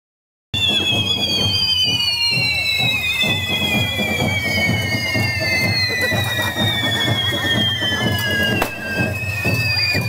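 Handheld firework fountains spraying sparks, starting about half a second in: a steady high whistle that slowly sinks in pitch, over a dense rushing noise. One sharp bang near the end.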